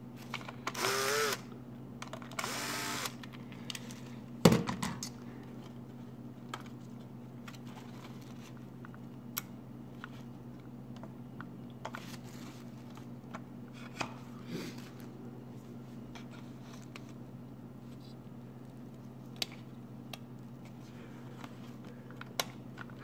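Electric screwdriver running in two short bursts, backing screws out of a microwave control board, then a sharp click a few seconds in and light scattered clicks as parts are handled and pulled off the board. A low steady hum runs underneath.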